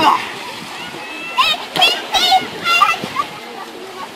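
Pool water splashing as a swimmer climbs out over the edge, followed a second or so in by several high-pitched shouted calls from young voices.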